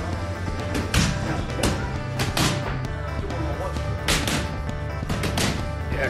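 Background music with a steady bass line, over sharp, irregularly spaced smacks of boxing gloves hitting focus mitts, often in quick pairs.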